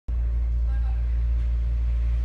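A steady low rumble that holds at one level, with faint voices in the background.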